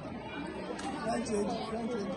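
Indistinct background chatter of several people talking at once.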